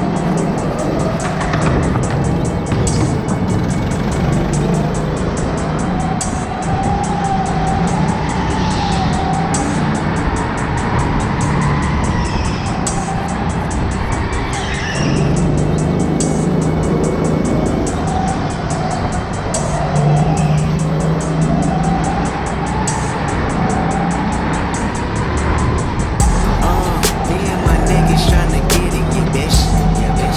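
Go-kart being driven at speed around a track, its motor and tyres running continuously under background music.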